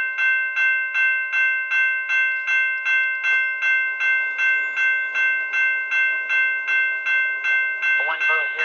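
Railroad grade-crossing bell ringing steadily, about three strikes a second, as an approaching train activates the crossing.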